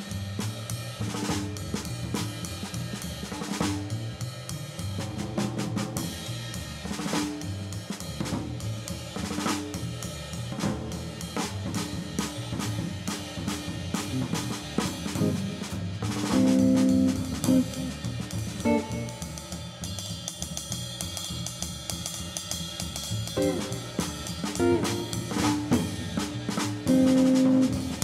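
Live jazz-style trio playing: a drum kit keeps a steady beat on snare, bass drum and hi-hat over an upright double bass line, with electric guitar on top. Loud guitar chords stand out about two-thirds of the way through and again at the end.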